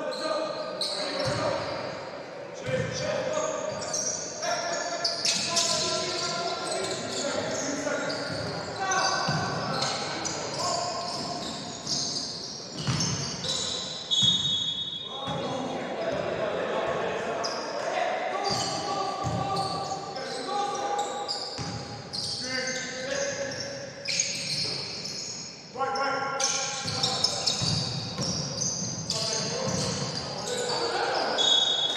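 Basketball game in a gym: the ball bouncing on the wooden court amid players' and coaches' shouts, echoing in the hall.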